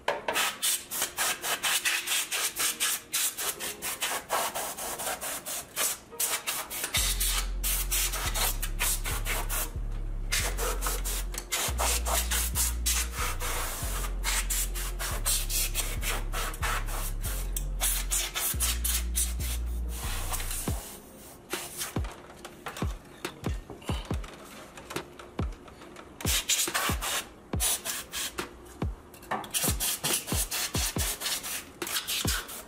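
A can of compressed-air electronics duster sprayed in many short hissing bursts into an open desktop PC case, blowing dust off the components and graphics card. The bursts come thick and fast for the first twenty seconds or so, then turn shorter and more spaced out.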